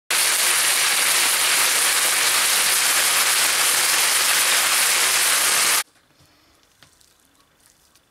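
Beef medallions sizzling in hot oil in a frying pan, a loud steady hiss that cuts off abruptly about six seconds in.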